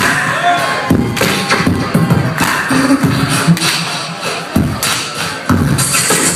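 Live beatboxing into a microphone, amplified over the hall's PA: a quick, irregular run of vocal kick-drum thumps and hissing snare and hi-hat sounds.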